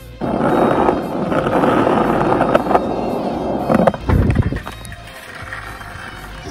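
Skateboard wheels rolling over rough street pavement, a loud gritty rolling noise with small clicks, recorded close up by the rider. It ends about four seconds in with a heavy low thump, then falls quieter.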